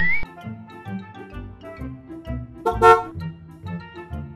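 Light children's background music with a steady beat. A rising whistle-like sound effect ends just as it begins, and a short, loud toot-like tone sounds about three seconds in.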